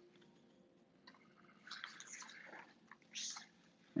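Quiet room with faint breathy mouth noises from a person near the microphone about halfway through, then a short breathy exhale near the end.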